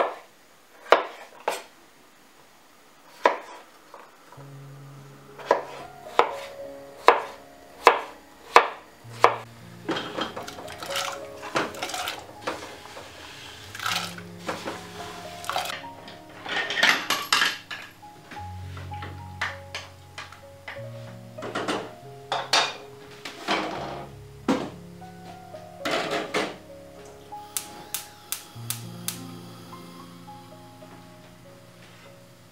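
A knife cutting peeled potatoes on a wooden cutting board, sharp knocks about once a second, followed by clinks and clatter of a steel pot and lid. Soft instrumental music comes in about four seconds in and plays under the kitchen sounds.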